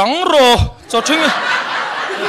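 A man's drawn-out, sliding vocal sound into a stage microphone, followed from about a second in by an audience laughing together.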